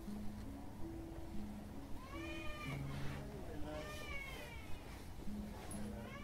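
Two short meow-like cries, each rising then falling in pitch, about two seconds in and again around four seconds, over soft background music of low held notes.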